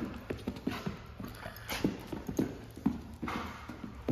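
Footfalls of a dog and a person on rubber matting: a run of irregular soft thuds and scuffs, several a second, as the dog bounces and trots alongside the walking handler.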